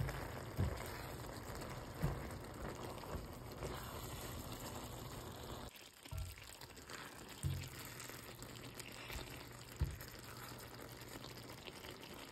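Eggplant and minced meat frying with a steady sizzle in a stainless steel pan, stirred with a silicone spatula that gives a few soft knocks against the pan. The sizzle drops to a quieter stirring after about six seconds.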